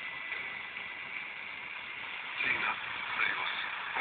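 A portable radio receiving a weak, distant FM station on 107.7 MHz, its sound coming through with a steady static hiss; a voice starts speaking over the hiss about two and a half seconds in. The hiss is the sign of long-distance FM-DX reception of a station from Finland.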